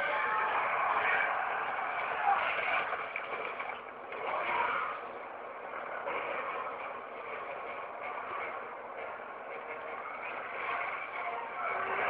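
Action-film soundtrack of a monster fight, played back through a small speaker and re-recorded, so it comes across thin with no bass: a dense, continuous din that swells and fades, with no clear tune or words.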